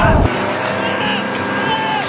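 Riders' loud screaming cuts off about a quarter-second in. A motorboat engine then runs steadily while towing an inflatable tube across the water, with fainter shouting over it.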